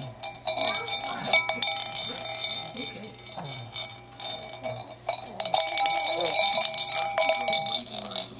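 A baby's toy handbell shaken and rung, jangling in two spells: one from about half a second in to about three seconds, and a louder one from about five seconds to near the end, with a quieter gap between.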